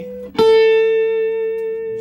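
Guitar playing a single plucked A note about half a second in, left to ring and slowly fade. It is one step of a lick over a C major seventh chord played slowly note by note, coming down from a high B.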